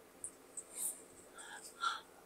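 Faint, scattered handling noises and soft breaths as a phone and a small magnetic power bank are moved about by hand, with the strongest blip near the end.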